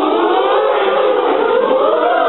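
Mixed choir singing long, held notes in harmony, the pitch lifting near the end.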